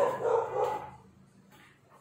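A dog barking: three quick barks in the first second, then quiet.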